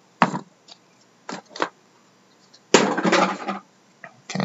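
Trading card box packaging being handled: a few sharp clicks and taps, then a scraping rustle lasting about a second, near the end, as a stack of cards and a cardboard insert are pulled from the box.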